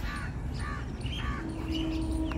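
A bird calling three times, about half a second apart, over a steady low rumble; a steady hum comes in near the end.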